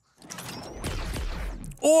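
Film soundtrack from an action scene: a noisy, rustling sound-effects bed with a low rumble that builds, after a brief dropout at the start. A man's voice breaks in near the end.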